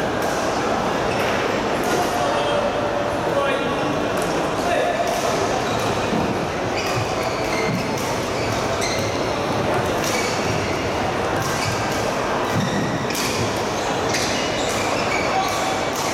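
Busy badminton hall din with sharp racket strikes on shuttlecocks and shoe squeaks on the court floor, scattered irregularly over a constant echoing background.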